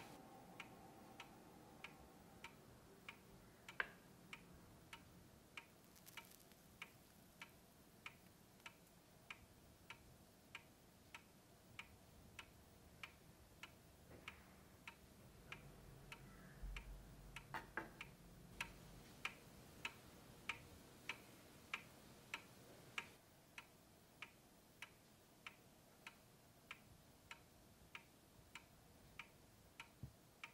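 A clock ticking steadily in a quiet room, about three ticks every two seconds. A brief low rumble and a few soft knocks come about halfway through.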